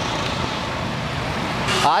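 Steady, even roar of road traffic, with no single vehicle standing out.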